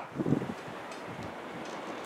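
Steady wind noise on the microphone, with a brief voice sound just after the start.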